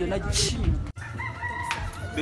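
A rooster crowing, with a brief dropout in the sound a little under a second in.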